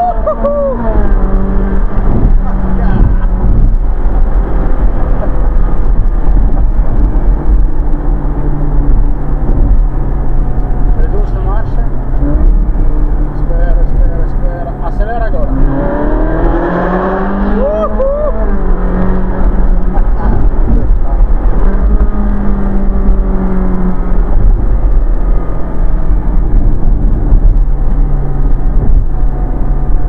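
Ferrari 458 Spider's V8 engine heard from the open cockpit with the roof down, running at a steady cruise under heavy wind rumble on the microphone. Just after the start the engine note drops away. About sixteen seconds in it climbs in pitch as the car accelerates, then settles back to a steady drone.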